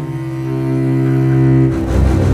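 Dramatic film score: low bowed strings, cello and double bass, hold long notes that change about half a second in and swell. A deep hit comes near the end.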